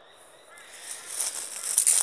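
Crackling, rustling handling noise from the phone's microphone as the phone is moved and rubbed against clothing. It starts about half a second in and grows louder toward the end.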